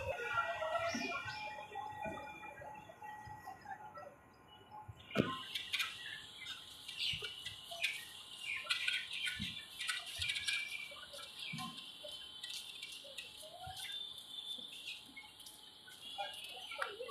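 Small birds chirping repeatedly over faint outdoor background noise, with one sharp knock about five seconds in, after which the chirping becomes busier.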